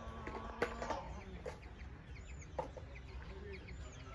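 Chickens clucking, with one drawn-out call in the first second and a couple of sharp clucks. Small birds chirp faintly.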